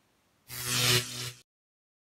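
A short transition sound effect: a loud hissing swell over a steady low tone, starting about half a second in and lasting under a second, then cut off suddenly into dead silence.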